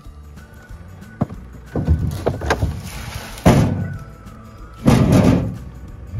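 Wooden boards and junk being pulled from a metal trailer bed and thrown down, making several loud thuds and scrapes over background music.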